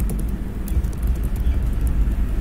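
Steady low background rumble with a few faint, scattered computer-keyboard clicks as text is typed.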